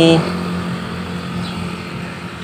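A motor vehicle going by in the background, its noise slowly fading away, after the last moment of a spoken word.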